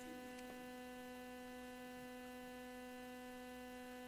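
Faint, steady hum with a clear pitch and a stack of overtones, unchanging throughout.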